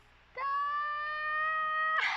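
A woman's high-pitched squeal of delight, held for about a second and a half on one note that creeps slightly upward, then breaking off abruptly.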